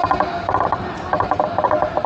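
Rapid ratchet-like clicking in short, irregular bursts, four or so in two seconds, each burst a quick run of sharp ringing clicks.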